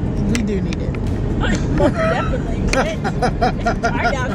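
Steady rumble of a moving car heard from inside the cabin, with a woman's voice over it breaking into a quick run of short laughs in the second half.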